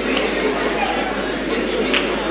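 Hubbub of many audience members talking among themselves at once in a large hall: an even murmur of overlapping voices with no single speaker standing out.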